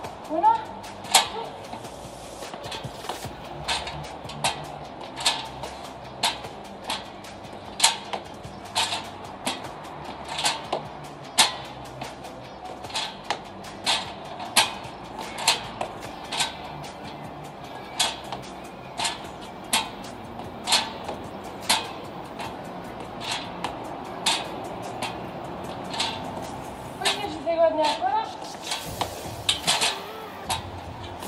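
Trainer's shoes knocking on the steps of a small folding stepladder during step-ups with knee raises: a sharp click about once a second, very regular.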